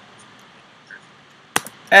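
Faint steady hiss, then a sharp click about one and a half seconds in with a lighter click right after, as the video playback is paused at the computer. Speech begins right at the end.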